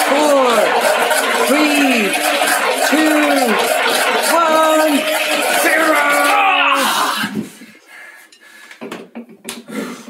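Handheld immersion blender running in a pot of red lentil hummus, puréeing it, with a voice counting down over the motor. The blender cuts off about seven seconds in, leaving a few light clicks.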